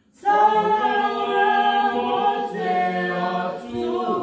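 A small group of men and women singing together unaccompanied, in long held notes. The singing starts up again just after the start, following a brief breath pause.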